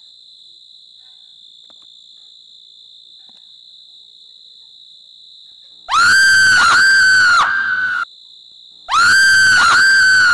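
A loud, high-pitched eerie shriek, three wavering rising-and-falling cries with a short tail, is played twice as an identical horror sound effect about three seconds apart. It sits over the steady chirring of crickets at night.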